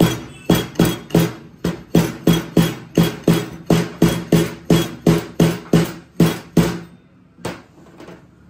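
Sliding oil seal driver striking down the steel inner tube of a Yamaha FZS25 front fork, about three blows a second, each a metallic knock with a short ring, tapping a new fork oil seal into the outer tube with an old seal on top as a guard. The blows stop near the end after one last, separate strike.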